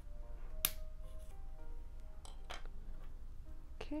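Light background music with a few sharp clicks and cracks from the thin plastic shell of a ping-pong ball as a point is pushed through it to punch a hole. The loudest crack comes under a second in, and two more follow close together midway.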